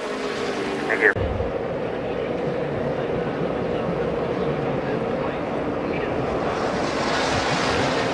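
Racetrack sound from a TV broadcast feed: a steady, noisy roar of stock-car engines. It changes abruptly about a second in and grows brighter near the end.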